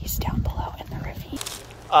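Hushed whispering close to the microphone, with a rough, crackling rustle underneath that fades away near the end.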